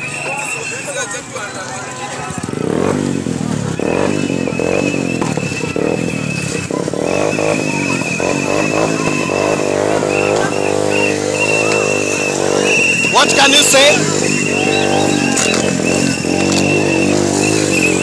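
Motorcycle engines running and revving close by, rising and falling in pitch, amid a crowd's voices. A high shrill tone sounds on and off.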